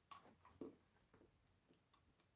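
Near silence, with two faint clicks about half a second apart near the start: a bite being taken from a chocolate bar with Pop Rocks in it.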